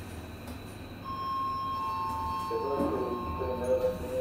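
SJEC Liftronic lift's arrival chime: two tones, a higher then a lower, starting about a second in and holding. Part way through, a recorded man's voice announcement begins over it, with the car's low travel hum underneath.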